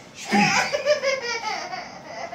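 A baby laughing in a few high, quick bursts, loudest in the first second and trailing off toward the end.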